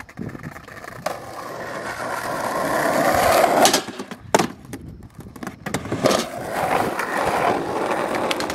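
Skateboard wheels rolling on asphalt, the rolling noise growing louder as the board comes closer. About halfway through come two sharp clacks of the board, about a second apart, and then the rolling picks up again and grows.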